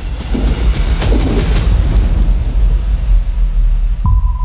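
Loud rushing of churning sea water over a deep, steady rumble, the hiss thinning out over the few seconds.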